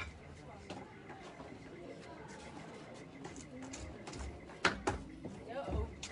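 Faint background voices of people talking, with two sharp clicks about four and a half seconds in and a low thump near the end.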